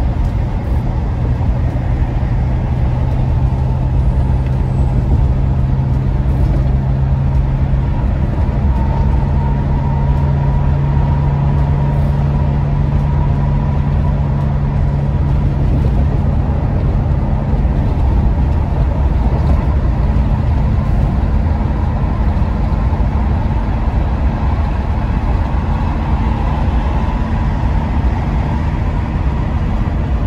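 In-cabin driving noise of a 2001 Ford E-350 camper van cruising at highway speed: a steady low engine drone over continuous road and tyre rumble.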